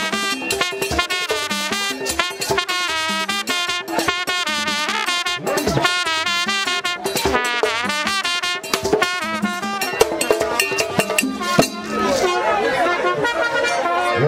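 A trumpet playing a melody of wavering, sliding notes over steady drumming in Haitian Vodou ceremonial music.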